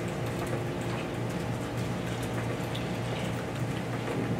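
Steady low hum of the room, with faint light clicks of a computer keyboard and mouse being used.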